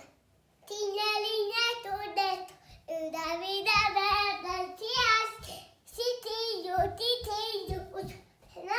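A young child singing in long, wavering notes with no clear words, starting about a second in. A few short low thumps come in the second half.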